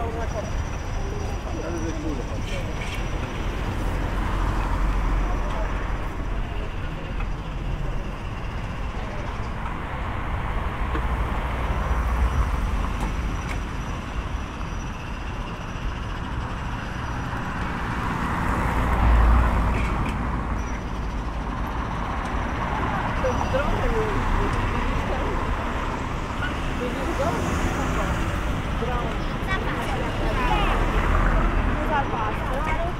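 Town street ambience: road traffic going by with people talking. A vehicle's low rumble swells and fades about two-thirds of the way through.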